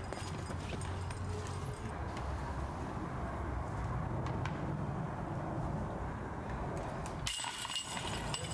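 Steady low outdoor rumble, then near the end a putted golf disc strikes the left side of a chain basket's hanging chains with a metallic jingle and drops into the basket.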